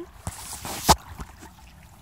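Water sloshing around boots wading in a shallow creek, with one sharp knock just before a second in.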